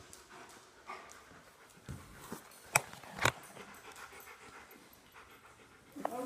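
A dog panting, with a few short sharp knocks, the two loudest about half a second apart near the middle.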